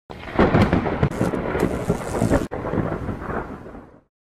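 A loud, rumbling noise with sharp crackles. It drops out abruptly about two and a half seconds in, comes back quieter and fades away near the end.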